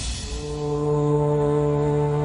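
Music carrying one long, steady, horn-like note that strengthens about half a second in and is then held without change.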